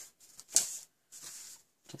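Card stock being handled and rubbed on a craft mat: two short papery scrapes, a sharper one about half a second in and a softer, longer one after it.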